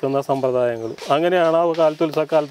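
A man talking in Malayalam, a low male voice speaking on without a pause except a brief break about a second in.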